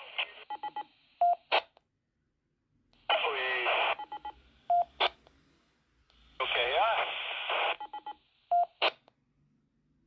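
Amateur-radio transmissions received through a Baofeng UV-9R Plus handheld transceiver's speaker: two short overs of thin, narrow-band radio audio, each ending in a quick string of roger-beep or DTMF tones, a short steady tone and a burst of noise as the squelch closes. The beep-and-noise sequence comes three times, near the start, about halfway through and near the end.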